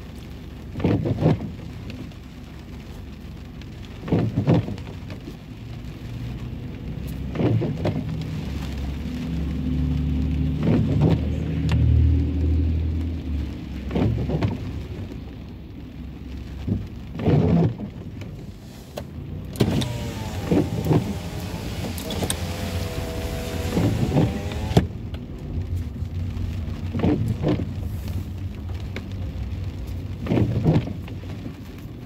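Rain on a car with its engine running, and a short swish repeating about every three seconds, typical of windshield wipers. About two-thirds of the way in, a pitched whine dips and rises again over several seconds.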